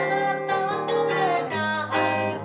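Live pop song: a woman singing into a microphone, backed by keyboard and electric guitar.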